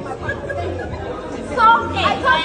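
Speech: a woman talking over the chatter of other people in a large, busy room.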